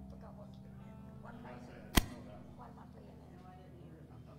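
Soft background music of long sustained notes with faint voices over it, and a single sharp click about halfway through.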